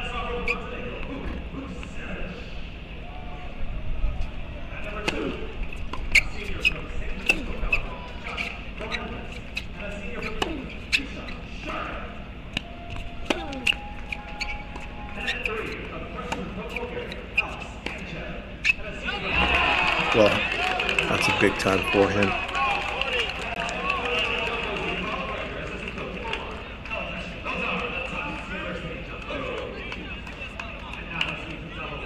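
Tennis ball bounces and racket strikes on an outdoor hard court, a string of sharp separate pops. About two-thirds of the way through, a burst of shouting and cheering from players and spectators breaks out after the point and slowly dies down.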